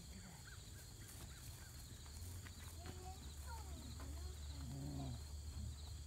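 Low wind rumble on the microphone over a steady, pulsing insect chorus, with a few faint short squeaky glides.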